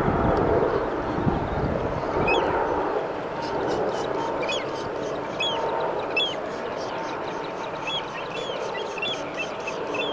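Seabirds at a nesting colony calling repeatedly: short, hooked, rising-and-falling calls, starting about two seconds in and coming several times a second toward the end. A low rumble is heard in the first second.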